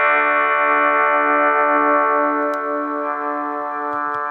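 Electric guitar played through a Marshall MS-2 one-watt mini amp: a single chord left to ring, slowly fading.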